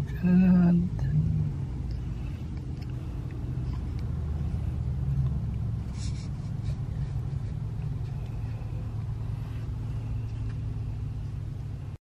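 Car's engine running, heard as a steady low rumble from inside the cabin that swells slightly a few seconds in. A brief voice sounds at the start.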